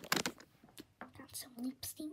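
Clicks and rubbing from small things handled right against the tablet's microphone, with soft whispering and a brief murmur from a young girl about one and a half seconds in.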